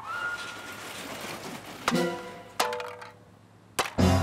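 Cartoon sound effects over music: a rising whistle-like glide, then two sharp hits about two seconds in, each with a short ringing pitched tone, and a click near the end.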